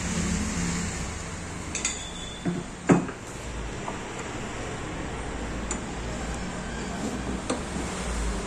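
The metal clamp parts of a monitor stand knock and clink against each other and the wooden table edge as the clamp is fitted. There are a few separate knocks, the loudest about three seconds in, over a steady low background hum.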